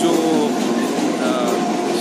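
Steady, loud rushing noise of passing vehicles, with no breaks.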